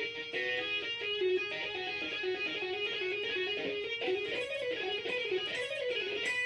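Electric guitar playing a legato run of hammer-ons and pull-offs: a steady stream of single notes moving up and down in small steps. The fretting hand's index finger mutes the strings behind the notes, so no open strings ring.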